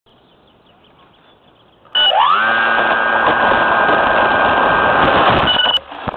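A small electric motor starts about two seconds in with an upward-gliding whine. It holds a steady high whine with a noisy rush for about three and a half seconds, then cuts off abruptly with a click just before the end.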